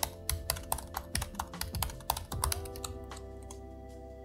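Fast typing on a computer keyboard, a quick run of keystrokes that thins out and stops about two and a half seconds in. Background music with steady held notes plays underneath.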